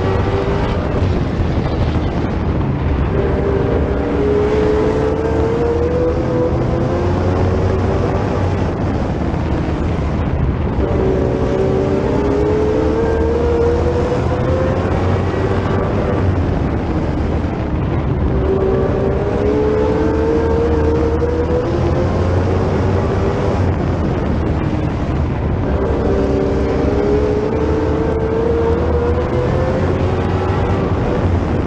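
Sportsman stock car's engine at racing speed, heard from a camera mounted on the car. It climbs in pitch down each straight and drops back as the driver lifts for the turns, a cycle of about every seven to eight seconds, four times.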